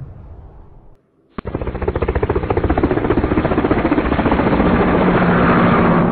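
Edited intro sound effect: a fading whoosh, then a loud, dense, very fast rattle that starts about a second and a half in and grows louder.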